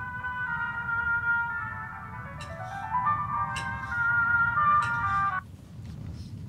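Music from a horror short film's soundtrack: a slow melody of held notes that steps through a few pitches and cuts off abruptly about five seconds in.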